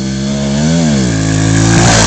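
Pit bike engine revving hard as it runs up to a jump, getting louder as it nears. The pitch rises and dips once near the middle, then holds and climbs again toward the end.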